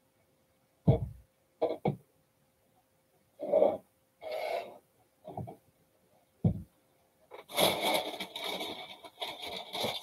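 A roll of deco mesh being handled and unrolled on a work table: a few short bumps and rustles, then a longer crinkling rustle from about seven and a half seconds in as the mesh is pulled off the roll.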